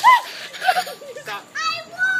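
Adults and young children laughing and shrieking, just drenched with ice water from buckets. A sharp cry at the start, a run of laughter in the middle, and a long high-pitched squeal near the end.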